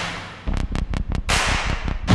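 Electronic sound effects for an animated title logo: a whoosh dies away, then about half a second in a fast run of sharp glitchy clicks over deep bass, and another whoosh swells up near the end.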